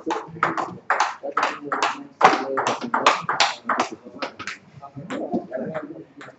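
Table tennis ball clicking back and forth between paddles and table in a fast rally, several hits a second. The hits thin out about four and a half seconds in.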